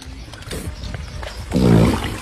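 A person's voice: one short, loud cry about one and a half seconds in, over a low rumble with a few scattered knocks and splashes.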